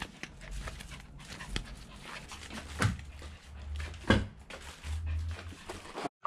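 A small poodle-type dog close to the microphone, with flip-flop footsteps on pavement; two sharp slaps, about three and four seconds in, are the loudest sounds.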